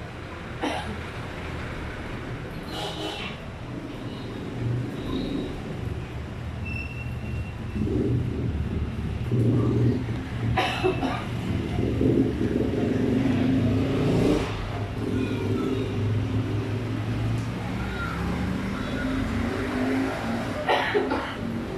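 A motor vehicle engine running with a low, uneven hum that grows louder partway through and rises in pitch near the end, with a few sharp clicks.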